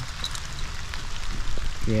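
Steady rain falling on the dead leaves of the forest floor.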